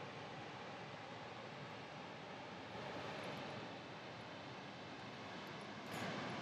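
Faint, steady outdoor noise, an even hiss with no distinct events, a little louder for about a second around the middle.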